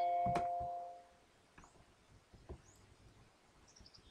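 A computer's electronic chime: a few steady tones ringing together and fading out within about a second, with a sharp click shortly after it starts. A few faint clicks follow.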